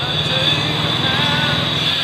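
Small motorcycle engine idling with a steady low pulsing, under a steady high-pitched whine.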